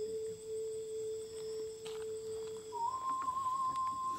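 A single steady pure tone from a background score, held on one low note, then stepping up to a higher note about three seconds in.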